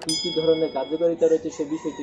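A mouse-click sound effect followed by a bright bell-like chime that rings for about a second, from a subscribe-button animation, over a man's continuing speech.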